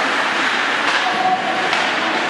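Ice hockey play heard from the stands: a steady hiss of skates scraping across the ice, with faint shouts from players or crowd and a couple of light stick or puck knocks.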